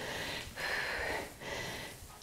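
A woman breathing heavily from exertion while working dumbbells, three breaths in quick succession.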